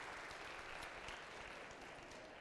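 Faint applause from a congregation, fading away.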